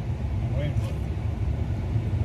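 Steady low rumble of a running car heard from inside its cabin, with a faint voice briefly over it.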